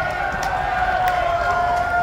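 A single sustained high note held through the concert PA, sinking slightly in pitch, over the murmur of the crowd.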